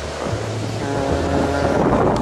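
Wind rushing over the microphone, a steady noisy hiss, over background music with a low bass line that changes note about once a second.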